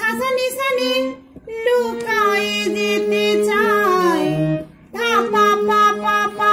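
Harmonium playing a melody in held, reedy notes, with a woman's voice singing the same line along with it. The phrases break off in two brief pauses.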